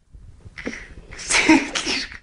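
A short, loud, sneeze-like burst of breath about a second and a half in, in two quick pulses, after a softer rush of breath.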